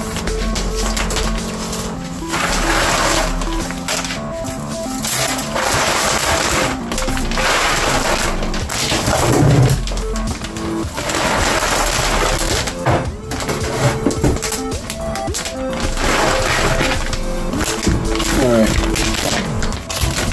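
Background music, over which cooked brown rice is scooped and poured into a plastic grow bag several times, each pour a short rustling, rattling rush of grains.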